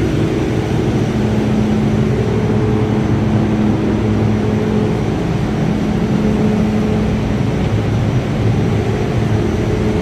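Paint booth ventilation fans running: a steady, loud rush of air with a constant low hum.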